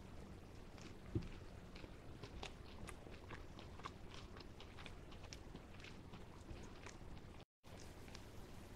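A person chewing a chunk of fried chicken breast: faint, irregular crunching and mouth clicks, with a slightly louder soft knock about a second in.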